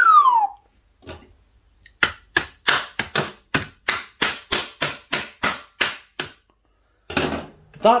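Plastic film lid of a microwave ready-meal tray being stabbed through again and again to vent it: a quick, even run of sharp pops, about four a second, stopping about six seconds in.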